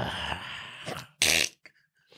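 A man's low, drawn-out vocal hesitation trailing off, then a short, sharp breathy burst about a second in.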